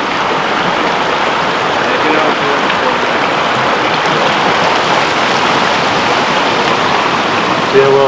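A creek rushing steadily, a constant even hiss of running water.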